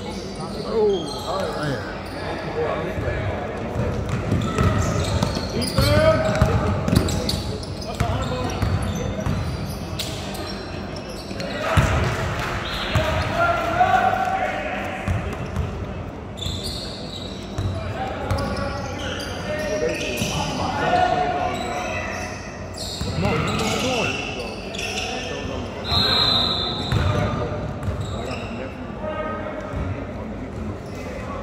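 Basketball game in a large gymnasium: the ball bouncing and knocking on the hardwood court amid indistinct shouts and voices of players and onlookers, echoing in the hall.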